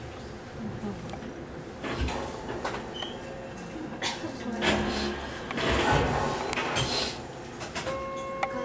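Keihan electric train running slowly, heard from inside behind the cab: a rumble of wheels and bogies with several knocks and clattering surges, loudest about halfway through, as the wheels pass over rail joints.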